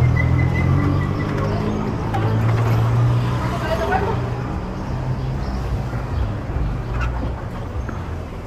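Street traffic: motor vehicle engines running close by, a steady low hum, with voices in the background.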